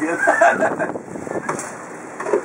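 People laughing, loudest in the first half second or so and then dying down into scattered chuckles.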